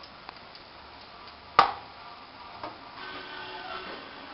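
A metal spoon clinking against steel vessels as pakora batter is dropped into hot oil, with one sharp knock about one and a half seconds in and a few lighter clicks. Underneath, the oil in the kadhai sizzles faintly as the pakoras fry.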